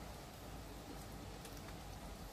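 Faint, steady outdoor background noise: a low rumble under a soft hiss, with no distinct sound event.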